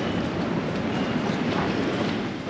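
Steady low rumbling background noise with no distinct events, such as traffic or wind rumble on the microphone.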